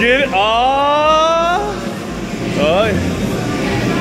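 A voice sliding up in one long rising note for about a second and a half, then a short vocal sound near the end, over background music.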